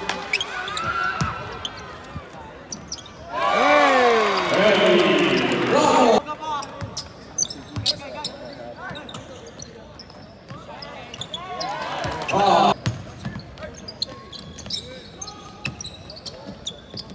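Courtside sound of a basketball game in an arena hall: the ball bouncing on the hardwood court amid players' and spectators' voices. A loud burst of many voices shouting at once comes about three seconds in and cuts off abruptly about three seconds later, and a shorter loud shout comes near twelve seconds.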